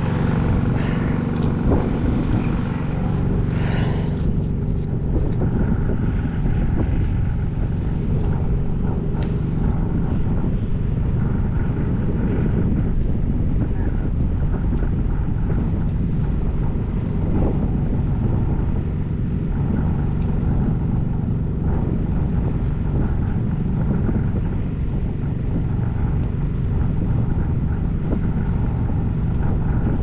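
Steady low rumble with a faint, even hum running under it, and a few light clicks in the first five seconds.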